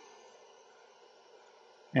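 Faint, steady hiss of air from the hot air rework handpiece of a JCD 8898 station, its fan on full as it heats up.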